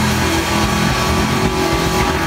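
Live rock band with distorted electric guitar and bass holding a loud, steady sustained chord, with a dense wash of noise over it.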